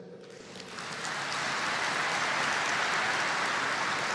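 A large audience applauding, swelling over about the first second and then holding steady.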